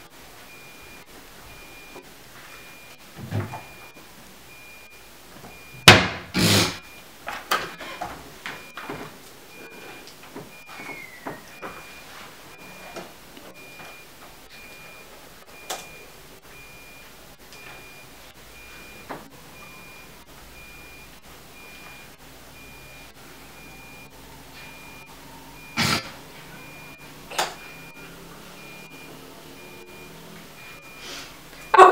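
Scattered knocks and thuds of objects being handled and set down: two loud thuds about six seconds in, a run of light clicks and taps after them, and two more thuds near the end.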